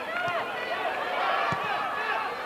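Several female football players shouting and calling to one another on the pitch, their voices overlapping, with a couple of short thumps of the ball being struck.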